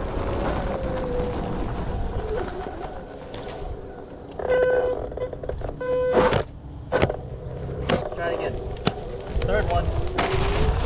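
Onewheel GT-S hub motor whining steadily under load as the board climbs a steep dirt hill, over wind rumble on the low-mounted camera. About halfway through come two short buzzing tones, then several sharp clicks and knocks.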